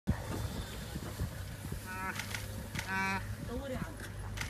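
Short nasal honking animal calls, two flat-pitched ones about two and three seconds in and a brief gliding one near the end, over a low steady rumble.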